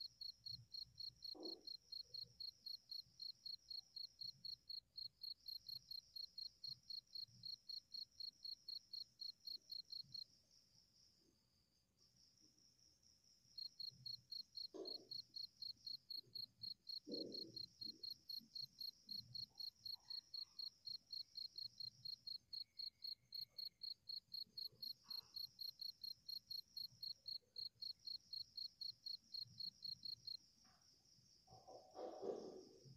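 A cricket chirping faintly and steadily, about four chirps a second, falling silent for about three seconds midway before starting again.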